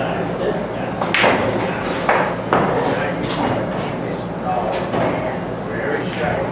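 Pool-hall chatter with three sharp clacks of pool balls striking, about a second in and twice more around two seconds in.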